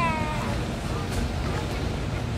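A short, high-pitched call from a voice, falling in pitch, heard over a steady low rumble.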